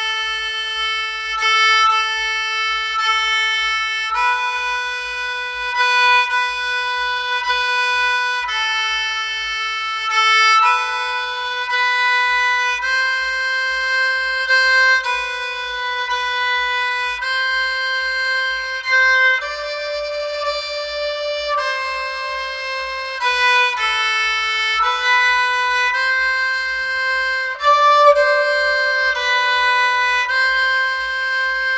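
Solo kamancheh (Persian spike fiddle) playing a simple practice exercise. It bows a steady string of held notes, each lasting a second or so, moving stepwise within a narrow range without pauses.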